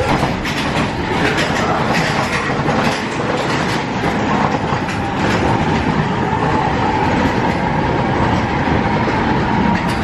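Space Mountain roller coaster train running on its track with a steady, dense clatter, and a faint steady tone joining in about halfway through.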